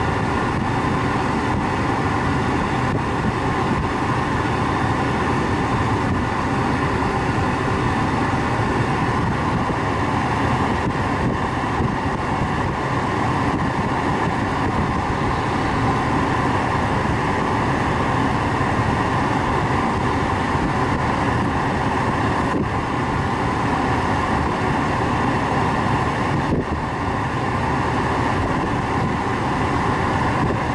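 Steady cabin noise inside a third-generation Acura TL, an even hum and hiss that holds unchanged throughout.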